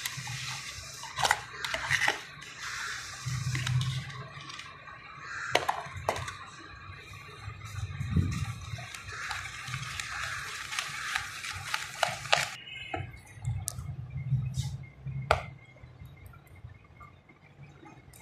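A spoon stirring a wet batter of flour, egg, sugar and milk in a bowl, making a steady wet mixing sound with occasional sharp clicks of the spoon against the bowl. The stirring sound drops away about twelve seconds in, leaving a few clicks.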